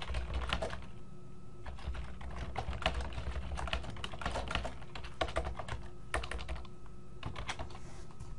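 Typing on a computer keyboard: quick runs of keystrokes, with a short pause about a second in and another near the end.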